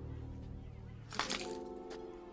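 Film score holding low sustained tones, broken about a second in by a sudden cluster of sharp cracks, with a new sustained chord entering at that moment. One more short crack comes near the end.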